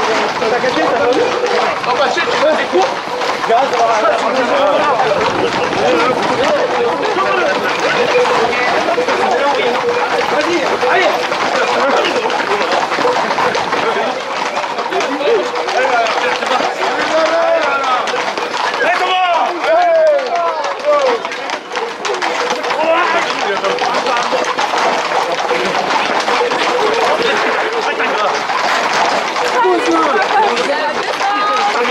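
A crowd of many people shouting and calling out at once over a constant outdoor crowd noise, with a louder burst of shouts about two-thirds of the way through.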